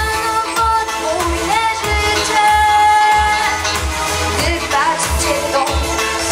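A girl singing a pop song into a microphone over a backing track with a steady bass beat, about two pulses a second. She holds one long note in the middle.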